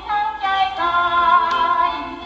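A female vocalist singing a Thai popular song in waltz time with instrumental accompaniment. She glides into a sustained note that wavers with vibrato.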